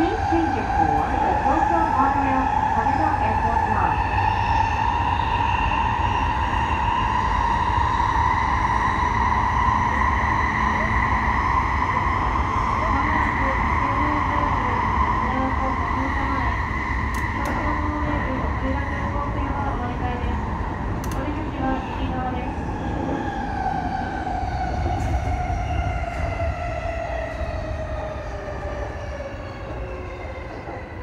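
E233-series electric train running through a tunnel: a whine of several pitches from the traction motors rises slowly over the first dozen seconds as it accelerates, holds, then falls steadily as the train slows into the next station. Underneath runs a steady low rumble of the wheels on the rails, with a few faint clicks.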